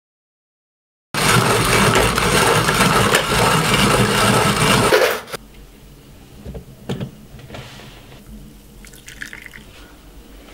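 Loud rush of running or pouring water, starting about a second in after silence and cutting off abruptly about four seconds later. A few soft knocks follow.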